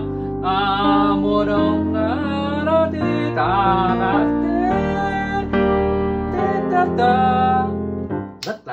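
Piano playing a slow ballad accompaniment in rich extended chords, with the held bass notes changing every second or two. A voice sings the melody over it with vibrato.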